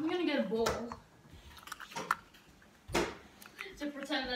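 A child's voice for about the first second, with no clear words, then a quiet room with a few light clicks and knocks, the sharpest about three seconds in.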